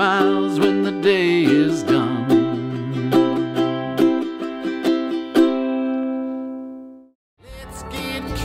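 Ukulele strummed in a rhythmic pattern while a man sings the end of the song's last line. The final chord is struck and left to ring, fading out to silence about seven seconds in.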